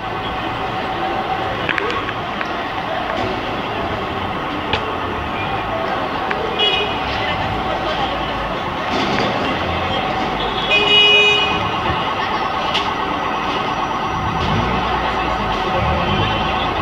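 Street noise of traffic and people talking under a continuous alarm tone, with short car-horn toots about seven and eleven seconds in.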